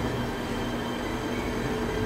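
Steady background hum and hiss with a few faint, unchanging tones, no distinct events.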